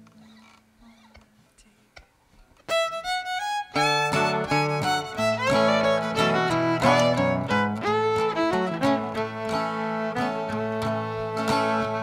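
Fiddle and guitar starting a country song's instrumental intro: after a brief quiet pause, the fiddle plays a few rising single notes, then the guitar comes in and both play on together.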